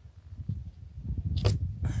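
Low rumble and handling noise as a strip of half-inch treated plywood is laid onto a 2x4 covered in construction adhesive, with one short sharp noise about a second and a half in.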